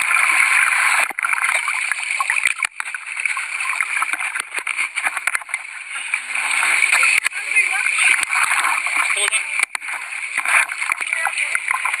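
Seawater splashing and sloshing around a camera held at the water's surface, with indistinct voices of people swimming beside a sinking small plane mixed in.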